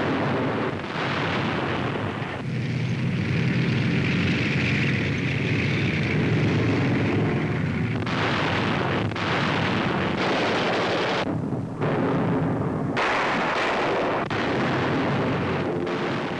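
Battle sound effects on an old newsreel soundtrack: continuous explosions and gunfire. From a few seconds in, a steady low drone runs under it. From about halfway, a string of explosion blasts follows one after another.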